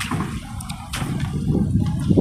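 Rushing noise of a car driving past on the street, with a few faint clicks.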